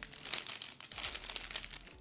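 A food wrapper crinkling and crackling in irregular bursts as a hotteok (Korean brown-sugar pancake) is handled in it.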